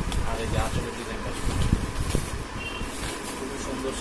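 Indistinct voices over a steady low rumble, with a few small knocks.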